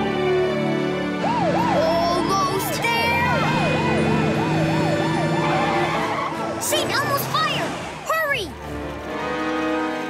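Fire engine siren in yelp mode: a fast rising-and-falling wail, about three or four cycles a second, over background music. Toward the end it gives way to slower, wider sweeping tones.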